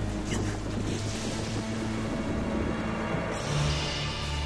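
Cartoon storm sound effect: a steady rush of wind and rain over held notes of background music. A new music chord comes in about three seconds in.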